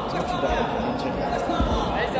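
Dull low thumps of grapplers' bodies dropping onto tatami mats, one about half a second in and a heavier one after a second and a half, over indistinct chatter of voices in a large hall.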